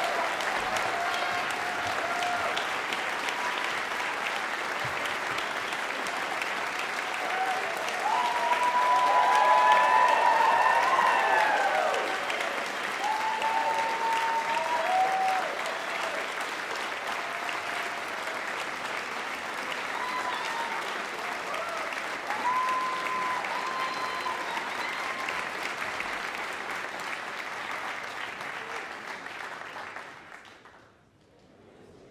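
Large theater audience applauding, with whoops and cheers swelling about eight seconds in; the applause tapers off and fades away near the end.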